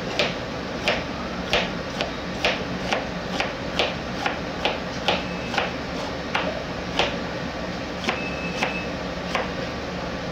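Scalloped kitchen knife slicing bell peppers on a plastic cutting board: a crisp tap each time the blade goes through the pepper and strikes the board, about two a second in a fairly steady rhythm.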